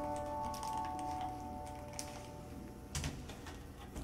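The last piano chord of a ballad's karaoke backing track, held and fading away. A few small clicks sound over it, the loudest about three seconds in.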